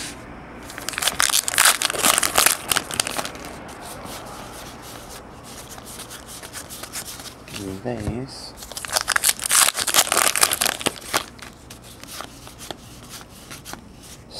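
A foil trading-card pack being torn open and its wrapper crinkled, in two stretches of tearing and rustling, each lasting about two seconds: one a second in, the other about nine seconds in.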